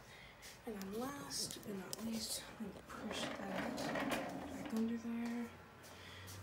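A person's voice talking quietly and indistinctly, with rustling handling noise about three seconds in.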